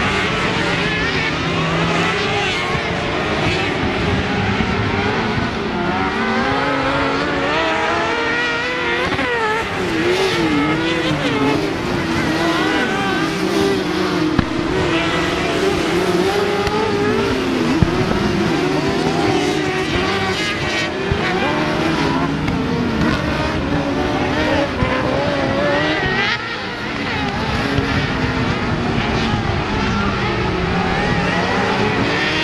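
Several kartcross buggies racing on a dirt track, their high-revving motorcycle engines overlapping and rising and falling in pitch as they accelerate and lift off.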